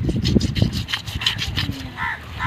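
Knife blade scraping the scales off a large carp, in quick repeated strokes, several a second.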